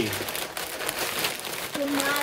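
Sheets of glossy advertising flyer paper being crumpled and scrunched into a ball by hand, a continuous crinkling crackle.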